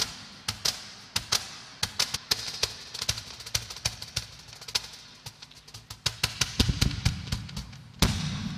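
Cajón played by hand: a quick, irregular run of sharp slaps and taps, with heavier bass strokes near the end.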